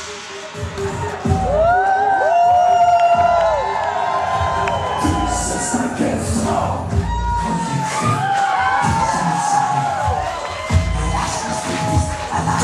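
Concert crowd cheering, screaming and whistling as a song ends, with many high cries rising and falling in pitch. A steady low tone holds underneath for about the first half.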